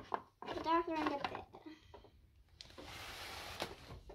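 A child's voice calls a drawn-out, sing-song "hey" in a play voice, then a steady hiss of about a second follows near the end.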